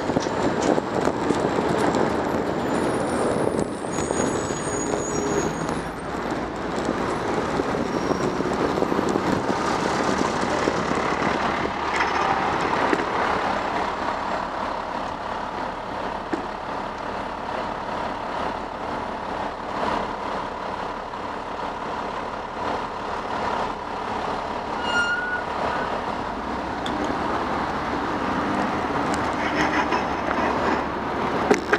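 Street traffic heard from a bicycle, with a heavy roll-off container truck running close alongside in the first few seconds, then quieter general traffic noise.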